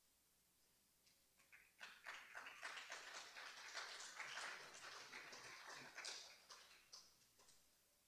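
Faint applause from a small audience: scattered claps about two seconds in that quickly thicken into steady clapping, then thin out and stop shortly before the end.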